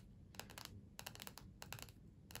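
Long fingernails tapping on a textbook's card cover: faint, quick, irregular clicks in small clusters.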